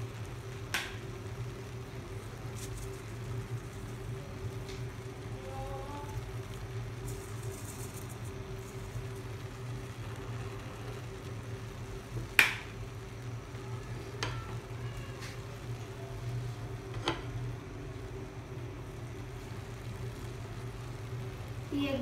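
A steady low hum runs throughout, with a few sharp clicks or taps; the loudest click comes about twelve seconds in.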